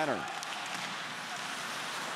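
Ice hockey arena ambience during play: a steady, even hiss of rink noise with no distinct impacts.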